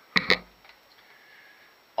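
Two quick, sharp clicks close together as the plastic Work Sharp knife and tool sharpener is handled on the bench.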